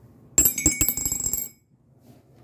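A small die thrown into a ceramic mug, clattering and rattling around inside for about a second, each hit making the mug ring, then stopping abruptly.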